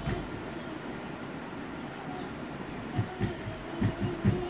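Steady low room noise with a few soft, low thumps about three seconds in and again near the end.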